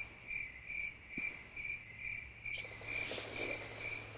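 Cricket chirping, a faint single-pitched chirp repeated evenly about three times a second, used as a comic "crickets" sound effect. A soft rustle comes in about three seconds in.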